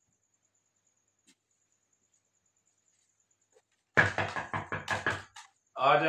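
A rapid run of knocks on a door, about eight quick strokes starting suddenly some four seconds in, after near silence. A short call from a voice follows near the end.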